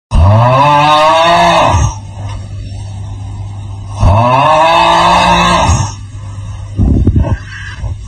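Loud, exaggerated snoring sound effect from a sleeping man: two long pitched snores of nearly two seconds each, rising in pitch at the start and about four seconds apart. A softer sound fills the gaps between them, and a shorter, rougher breath comes near the end.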